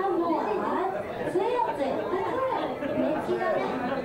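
Women talking and chattering into microphones, several voices overlapping.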